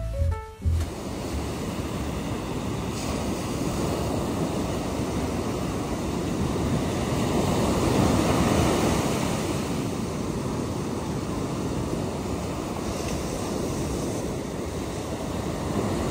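Ocean surf breaking and washing up a sandy beach: a steady rush that swells to its loudest about halfway through.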